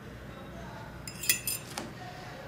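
Cutlery clinking against dishes: three quick clinks about a second in, the first the loudest, over a low room background.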